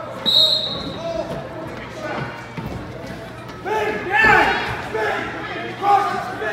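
A referee's whistle sounds once, short and shrill, near the start. Spectators and coaches then shout over the hall's echo, loudest about four seconds in.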